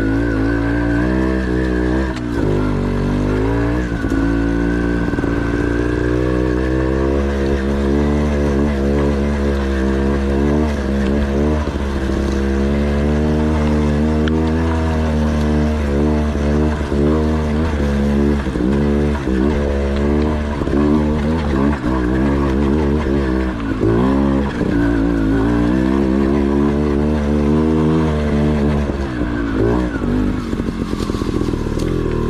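Dirt bike engine running loud while being ridden slowly over rough trail. The throttle is held fairly steady for the first few seconds, then worked on and off again and again, the pitch rising and dropping every second or so.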